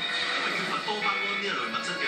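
Television programme audio: a narrator's voice over background music, heard through a TV's speaker.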